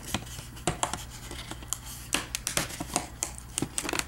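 Cardboard and packaging being handled as a small boxed item is worked out of an advent calendar door: irregular light clicks and scrapes, with a sharper click about two seconds in.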